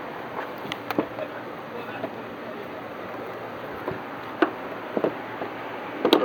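A car's hood latch being worked by hand: a few light clicks and knocks over steady outdoor background noise.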